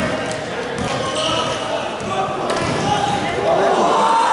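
Indistinct chatter of many voices in a large gymnasium, with a few sharp knocks among it.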